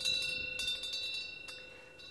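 A metal wind bell (pungyeong) hanging in the wind, struck lightly a few times, its bright ring of several tones slowly fading away.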